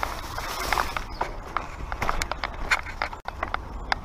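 Mountain bike ridden over rough rock and dirt trail: the tyres rolling and the bike rattling with frequent, irregular sharp knocks, over a steady low rumble.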